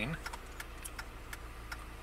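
Low steady hum of a stationary car idling, heard inside the cabin, with faint regular ticking over it.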